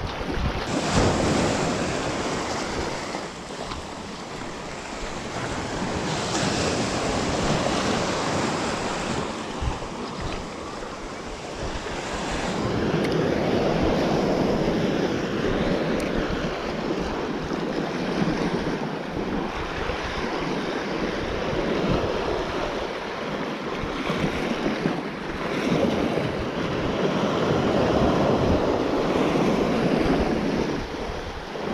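Small sea waves washing and breaking on the shore, the wash swelling and fading every few seconds, with wind rumbling on the microphone.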